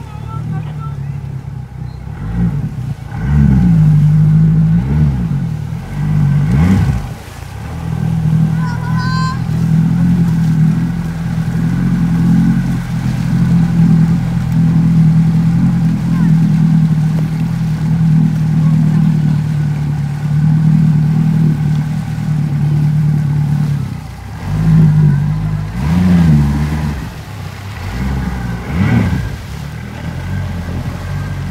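Yamaha 115 outboard motor on a speedboat towing an inflatable ride. It revs up and down several times in the first few seconds and again near the end, and runs at a steady pitch in between.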